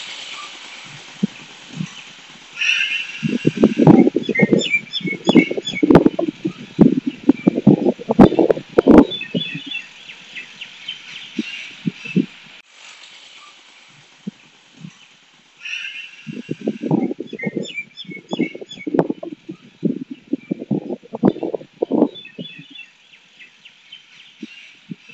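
Outdoor ambience with birds chirping, broken by loud, irregular low rustling and knocking sounds in two stretches.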